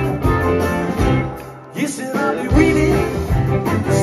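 Live rock band playing: electric guitars, bass, drums and keyboard. About a second and a half in, the band thins out and the bass and drums drop away for a moment. A guitar comes back in, and then the full band.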